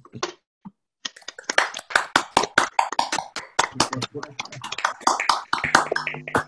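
Several people clapping at once over a video-call link, their claps overlapping in an irregular patter that starts about a second in and carries on, with voices mixed in.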